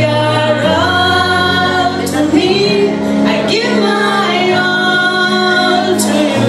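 A woman singing a gospel song into a microphone with long held notes that bend in pitch, over a backing track with a steady sustained bass.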